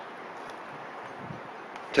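Steady, even outdoor background hiss with no distinct events.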